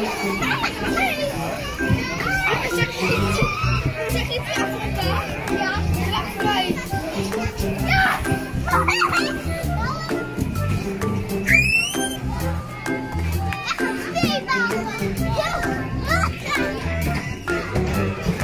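Children playing and calling out in a busy indoor play area, with one high rising squeal about halfway through, over background music with a steady low beat.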